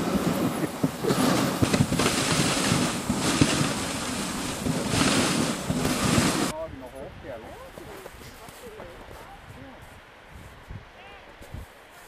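Dog sled running over snow: a loud, steady hiss of the runners and wind on the microphone, with scattered knocks. About halfway through it cuts to a much quieter background with a few faint whines from the stopped sled dogs.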